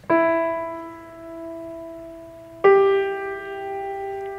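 A 1981 Yamaha G2 grand piano (5'8") played in its mid-range: a note struck just after the start rings and slowly fades, then a second, louder strike about two and a half seconds in rings on.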